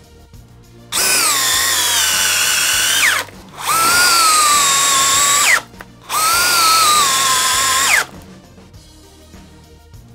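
DeWalt 20V cordless drills (DCD996 and DCD999) driving 6-inch TimberLOK structural screws into lumber in three timed runs of about two seconds each. The motor whine sags in pitch as each screw bites and sweeps up sharply as each run ends. Faint background music plays underneath.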